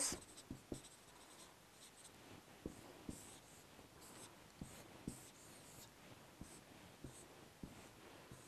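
Faint dry-erase marker strokes on a whiteboard while writing and drawing: a scatter of short, soft squeaks and taps of the marker tip, a few seconds apart.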